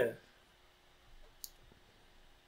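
A spoken word trails off at the start, then near-quiet room tone with a single faint, short click about one and a half seconds in.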